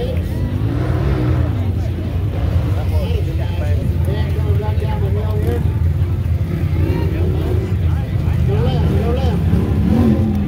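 Off-road race UTV engines running with a steady low rumble, with people's voices over it.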